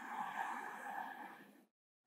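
A man's deep inhalation, a slow breathy intake of air for a pranayama breathing round, fading out about a second and a half in.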